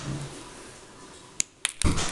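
Small wire cutters snipping thin jewellery wire: a couple of sharp clicks about one and a half seconds in, followed by a louder rustle of hands handling the wire and tools near the end.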